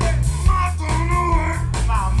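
Live blues band playing, with a man singing the lead into a microphone over electric guitar and a steady bass line.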